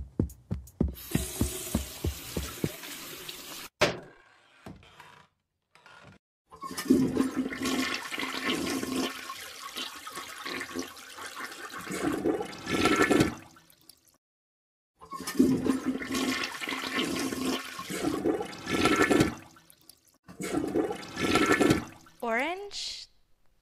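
A toilet flushing three times in a row: a long flush of several seconds, a shorter second one after a brief silence, and a third cut short near the end.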